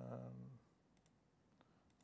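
A man's drawn-out "um" trails off about half a second in, then near silence broken by a few faint, short clicks from a laptop as settings pages are clicked through.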